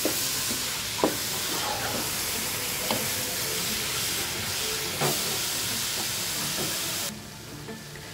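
Grated carrots sizzling in a pot as they are stirred with a wooden spatula: a steady hiss with a few knocks of the spatula against the pot. The sizzle drops away sharply about seven seconds in.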